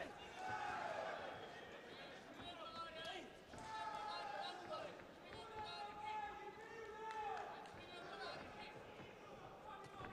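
Men shouting several drawn-out calls during a kickboxing bout, mixed with a few dull thuds of kicks and knees landing.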